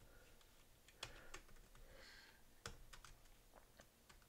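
Faint typing on a computer keyboard: a handful of scattered, separate key clicks.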